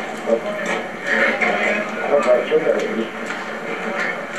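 People talking, the words not made out.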